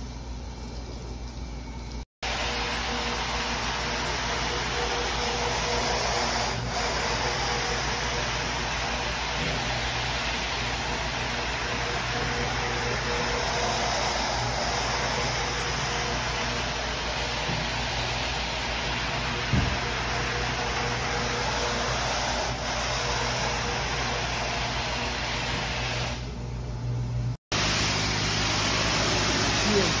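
Rotary floor scrubber running on a wet, soapy wool rug: a steady motor hum with a constant tone under the churn of the brush on the wet pile. Before it, water is briefly poured from a bucket, and after a cut near the end a pressure-washer wand hisses as it rinses the rug.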